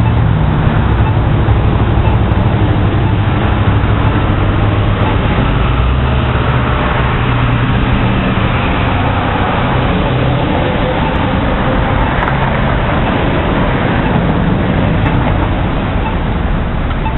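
Steady road traffic noise with a low engine rumble.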